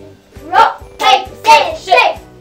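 A girl and a woman chanting the rock-paper-scissors count together in four quick, evenly spaced beats, over quiet background music.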